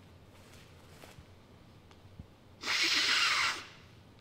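A man snorting hard through his nose once, a single noisy inhale about a second long, near the end, taking a bump of powder off a knife blade held to his nostril.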